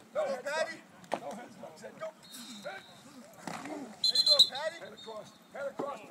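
Voices of players and coaches calling out on a football practice field, with a short high whistle blast about four seconds in, the loudest sound. There are a couple of sharp knocks, one about a second in and one near the end.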